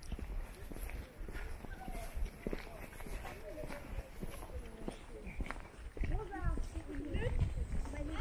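Footsteps of a person walking on a paved path, about two steps a second, over a low rumble of wind on the microphone. Indistinct voices rise and fall in the last two seconds.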